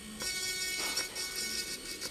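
Electric manicure drill running at about 30,000 rpm with a cone-shaped bit pressed at the cuticle: a steady, high whine.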